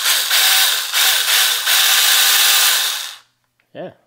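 Alloyman 6-inch cordless mini chainsaw's electric motor and chain running free with no load in a quick test, dipping briefly twice, then winding down about three seconds in.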